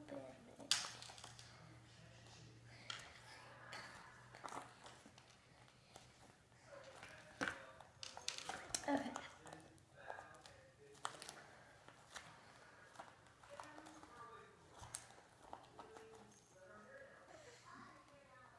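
Soft clicks and rustling from a small key and lock on a fluffy toy diary being worked by hand, repeated many times without the lock opening.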